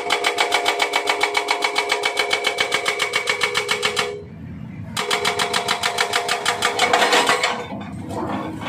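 Excavator-mounted hydraulic rock breaker hammering its chisel into rock: a fast, even run of blows, about nine a second, with a steady ringing tone. It stops for under a second about four seconds in, then starts again, and stops briefly near the end.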